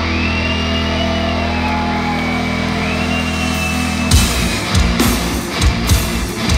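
Heavy metal band playing live in a hall: a low guitar and bass chord is held for about four seconds, with a thin, wavering high tone over it, then the drums and full band crash back in.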